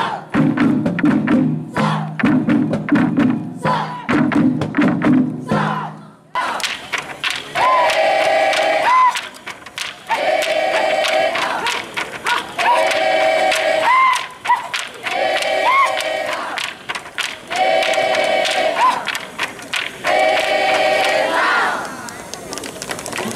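Traditional Dayak music with a low drone and sharp percussive clicks, giving way about six seconds in to a group of voices chanting in unison: about six repeated calls, each ending in a rising whoop.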